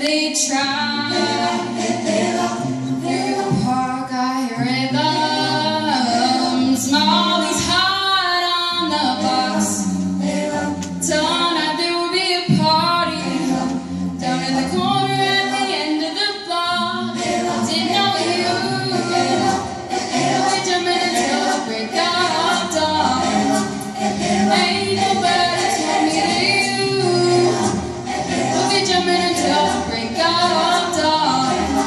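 Vocal ensemble singing a cappella, several voices holding and moving between notes in harmony.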